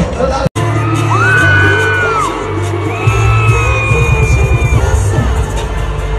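Live pop concert music over a stadium PA, recorded from among the audience: a heavy bass beat, with long high held voices or screams above it. The sound cuts out for an instant about half a second in.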